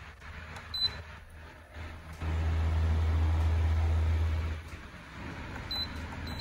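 Control panel of a Mistral 16-inch DC stand fan beeping as its buttons are pressed: a short high beep about a second in and another near the end. Under it runs the fan's steady air noise with a low rumble that drops away for the first couple of seconds, returns, then fades again.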